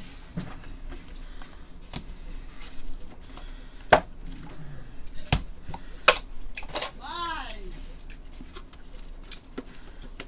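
Plastic card holders and trading cards being handled, with a few sharp clicks and taps. About seven seconds in, a short voiced exclamation falls in pitch.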